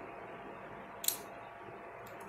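Low steady whir of a ceiling fan running, with one short, sharp click about a second in.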